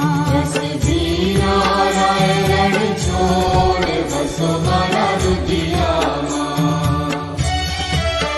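Devotional aarti music: chanted singing over a steady, repeating low beat.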